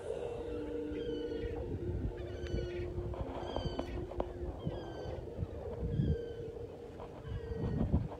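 Gulls crying repeatedly, short slightly falling calls about once a second, over wind rumble on the microphone.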